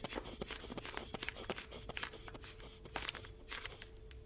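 Rubber inflation bulb of a manual sphygmomanometer squeezed over and over, a quick irregular run of short air and rubber sounds as the blood pressure cuff is pumped up. The cuff is being inflated while the radial pulse is felt, to find the pressure at which the pulse disappears.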